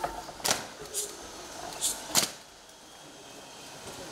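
Four sharp knocks in the first two and a half seconds, the last the loudest, from a police guard of honour's ceremonial drill. A faint crowd hubbub lies between them.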